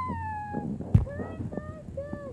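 High-pitched, meow-like vocal sound effects in a squeaky voice: one long falling call, then short squeaks later on, with a sharp knock about a second in.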